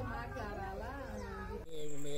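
An elderly woman's voice in a high, wavering, wail-like tone, its pitch rising and falling with no clear words. It cuts off abruptly about one and a half seconds in, and a man starts speaking.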